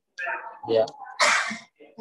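A short spoken 'ya', then a bit over a second in a short, loud hissing burst of noise lasting under half a second, the loudest sound here.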